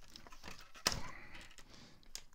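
Sturdy scissors cutting through the plastic clips that hold a toy figure to its packaging base: one sharp snap a little under a second in, among fainter clicks and handling noise of the plastic.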